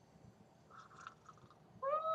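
A single high-pitched animal call near the end, rising then falling in pitch, after fainter soft sounds about a second in.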